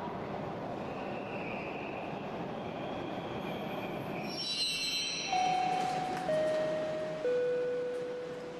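Subway train pulling in and stopping: a steady rumble of wheels on rail, a high squeal of brakes about four and a half seconds in, then a three-note chime, each note held about a second and stepping down in pitch.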